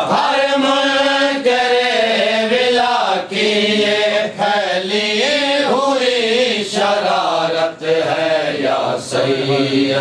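Male chanting of a noha, a Shia lament, sung without instruments in long held notes that waver and bend in pitch.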